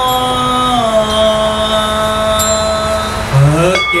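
Buddhist monks chanting a liturgy together, drawing out one long sung note that steps down in pitch about a second in and rises again near the end. A high ringing tone joins about halfway through.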